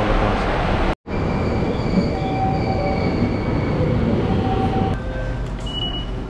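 Commuter train running: a steady rumble with high, steady whining tones that fade in and out, starting just after a sudden cut about a second in.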